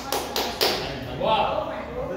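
A few sharp taps in quick succession, about four a second, in the first half second, followed by a voice talking briefly.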